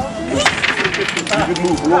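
A wooden Jenga tower collapsing onto a table: a sudden clatter of many small wooden blocks about half a second in, rattling and tumbling for over a second.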